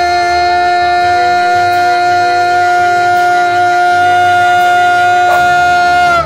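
A man's voice holding one long, loud sung note at a single pitch.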